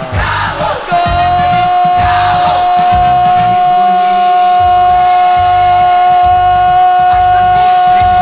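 Radio football commentator's drawn-out goal cry, one long note held on a steady pitch from about a second in, over a rhythmic goal jingle.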